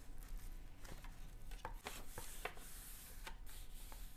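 Faint scratching of a pen on paper as someone writes by hand, with a few light ticks from the pen and paper.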